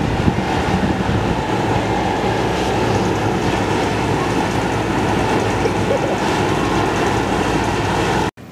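Loud, steady rumbling noise.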